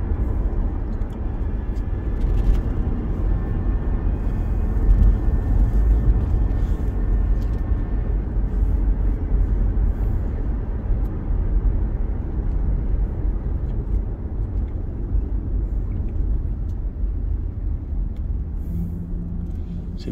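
Steady low rumble of road and engine noise heard from inside a moving car's cabin while cruising.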